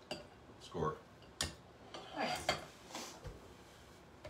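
A metal utensil clinking against a glass bowl as ground beef is scooped out, with a few sharp clinks spread over the seconds.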